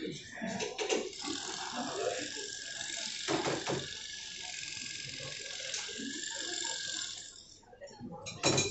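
A steady mechanical ratcheting whir of a tool fastening the lid of a carved wooden coffin, stopping shortly before the end, with low voices murmuring underneath.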